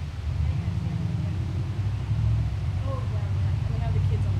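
A low, steady rumble with faint voices in the distance.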